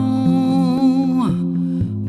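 A sung ballad: a woman's voice holds one long, slightly wavering note over soft instrumental accompaniment with a steady bass line, the note falling away about a second and a quarter in while the accompaniment carries on.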